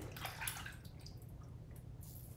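RazoRock Game Changer safety razor with a Feather blade scraping through lathered stubble on the cheek, in a few short strokes.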